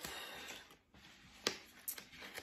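Faint handling of a small cardboard eyeshadow palette box, with two light clicks in the second half.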